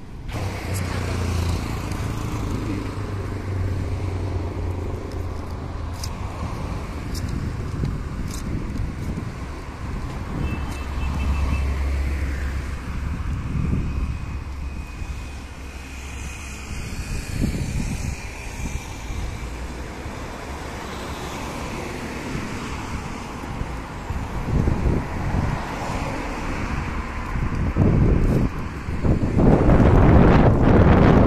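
Road traffic: car engines running and passing, with a low engine hum coming and going. Wind buffets the microphone near the end.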